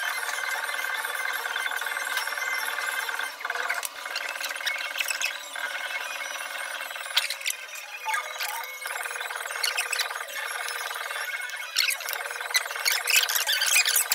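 Scattered clicks and crackles of chopsticks and food being handled against dishes over a steady whining hum. The clicks come thicker near the end.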